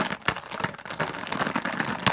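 A cardboard Dots candy box being handled with its lift-open flap torn back. The cardboard makes a rapid, irregular run of small crackles and clicks.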